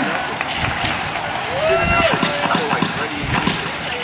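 Electric radio-controlled touring cars racing: a high-pitched motor whine rises as the cars accelerate, with a few scattered clicks in the second half.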